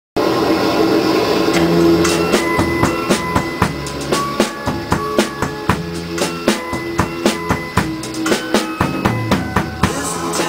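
Drum kit played live along with a recorded pop song's instrumental intro. Snare and bass drum strike in a steady beat, coming in about a second and a half in, over the record's backing.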